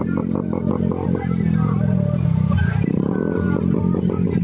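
Engines of many motorcycles running together as a procession of bikes rides past, with evenly spaced beats in the first second.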